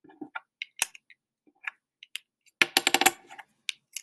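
Small plastic counting discs clicking as they are set into a plastic five-frame tray, a few separate clicks and then a quick cluster of clicks about two and a half seconds in.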